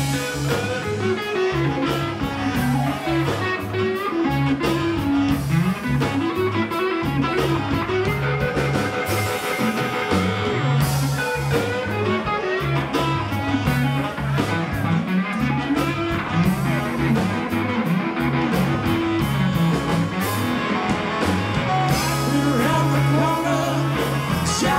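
Live rock band playing: a moving bass line under guitar and steady drums.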